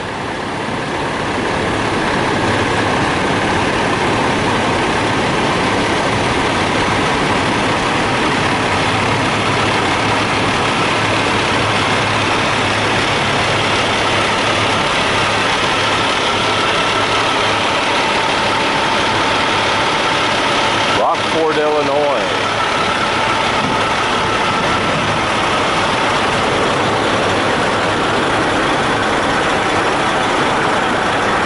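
Parked semi trucks' diesel engines idling, a steady continuous drone. About two-thirds of the way through, a brief wavering sound rises and falls over it.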